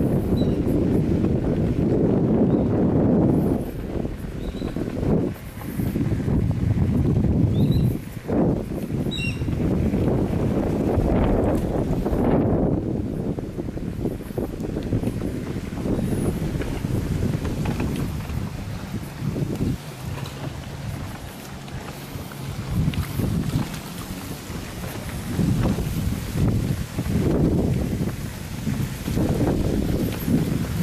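Wind buffeting the microphone of a camera carried on a moving bicycle: a low rumble that swells and drops, easing off for a few seconds a little past the middle.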